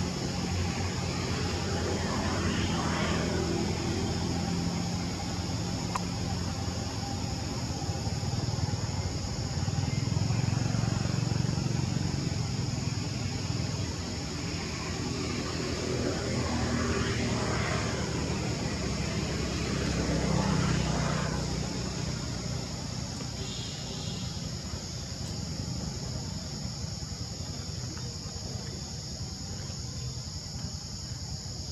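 Outdoor ambience: a steady high drone of insects over a low engine rumble, with traffic swelling and fading a few times.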